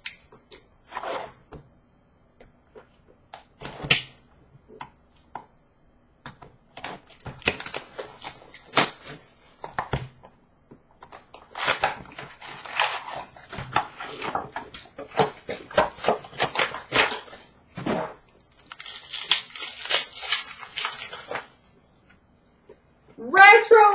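Trading-card packs being torn open and cards and box handled: crinkling of foil wrappers with sharp clicks and taps. Sparse taps at first, then denser bursts of crinkling from about a third of the way in, with brief pauses.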